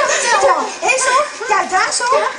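A crowd of voices, children's among them, talking and calling out over one another.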